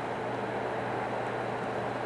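Steady low hum with even hiss: room noise, with no sudden events.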